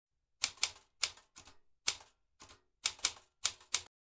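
Typewriter keystroke sound effect: about ten sharp, irregularly spaced key strikes over a little more than three seconds, stopping shortly before the end.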